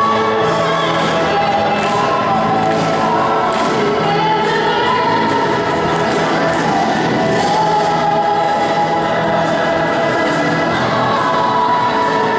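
A youth choir sings long held notes together with a woman singing lead into a microphone, over amplified accompaniment with a steady bass line and a regular beat.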